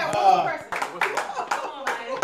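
A quick run of hand claps, starting under a second in, after a brief voice at the start.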